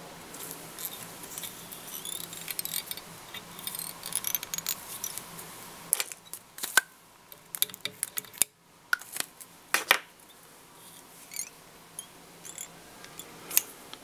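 Small handling noises of fly tying at a vise: soft rustling and scraping as a doubled hackle feather is wound on with thread, with a scatter of sharp clicks about six to ten seconds in.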